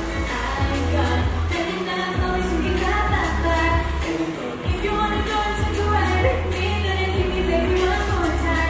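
A girl singing a pop song into a handheld microphone over an amplified backing track with a steady bass line and drum beat.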